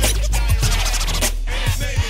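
Hip hop track in an instrumental break: DJ turntable scratching over a drum beat and a long, deep bass note held throughout.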